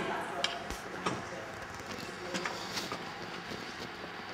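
Faint, indistinct talk in a large hall, with a few sharp clicks and knocks from a camera and tripod being handled and moved.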